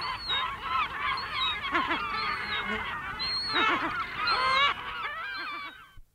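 Lesser black-backed gulls giving alarm calls: an adult's repeated 'kow' calls over an overlapping chorus of alarming chicks, as a steady run of short calls. It fades and cuts off near the end.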